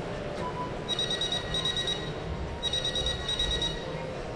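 A telephone ringing: two high, trilled rings of about a second each, over the steady murmur of the seated audience in a large hall.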